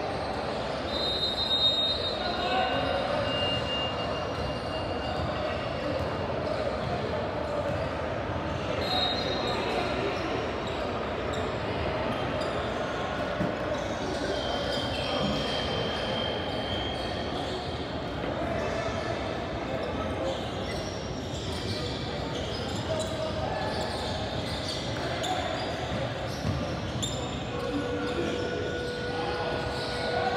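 Indistinct voices echoing around a large gym, with basketballs bouncing on the hardwood floor and a few short high squeaks.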